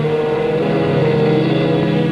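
Film score music: sustained chords held steadily, with the harmony shifting about the start.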